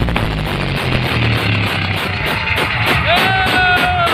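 Very loud music blasting from the Kartika stacked-speaker sound system, with a heavy, moving bass line and a fast beat. About three seconds in, a high note slides up and is held.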